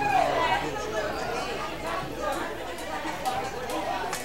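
Indistinct chatter of several voices talking in the room, with no music playing.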